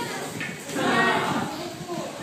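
People's voices, with a louder drawn-out cry about a second in.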